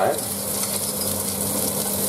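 Whole shell-on prawns frying in oil in a nonstick frying pan: a steady sizzle.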